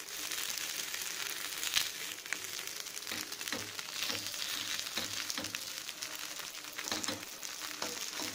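Oil sizzling steadily around kuzhi paniyaram batter balls frying in the cups of a paniyaram pan, with small crackles and pops throughout.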